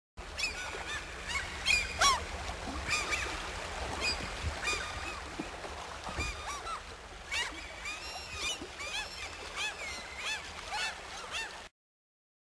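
Gulls calling: many short, overlapping, yelping calls, some rising and falling in pitch, over a low steady hum. The sound starts and cuts off abruptly.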